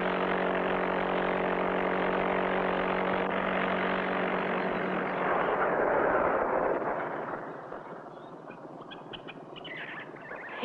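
Car engine sound effect: a steady motor drone with a low hum, swelling about six seconds in as the car drives by, then fading away within a couple of seconds. Faint bird chirps follow near the end.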